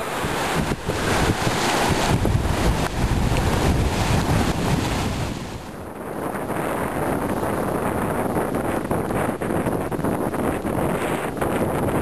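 Strong wind buffeting the camera microphone in gusts, over waves breaking on a rocky shore. The level dips briefly about halfway through, then the wind goes on with less hiss.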